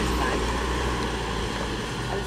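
FedEx Express delivery van driving past close by: a steady low engine rumble with tyre noise, easing off slightly toward the end.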